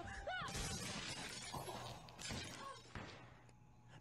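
Faint shattering and clattering of breaking objects, dying away over the next few seconds.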